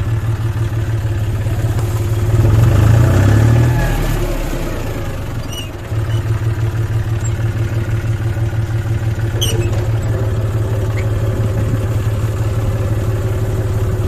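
John Deere tractor's diesel engine running close by as the tractor rolls over dry crop stalks spread on tarps. The revs rise about two seconds in, ease off with a brief dip around five seconds, then hold steady.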